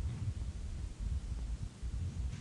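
A pause with no speech: room tone with a low, uneven rumble.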